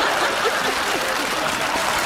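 Studio audience applauding steadily, with faint voices under the clapping.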